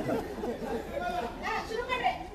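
Indistinct talking and chatter from several voices.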